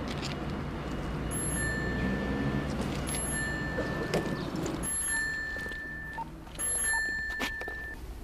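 A bicycle bell ringing four times, each a high ring held for under a second, roughly two seconds apart, over a steady background hum of the street.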